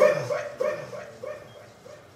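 The tail end of a song: a short pitched vocal-like sound repeating about three times a second in an echo that fades away over two seconds.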